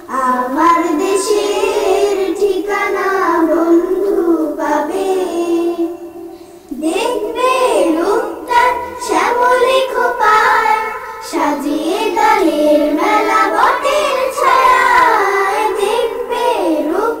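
A group of children singing a Bengali song together, with a brief pause about six seconds in before the singing picks up again more strongly.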